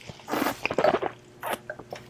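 A man sipping red wine, a run of wet, noisy mouth sounds over about a second, with a shorter one just after.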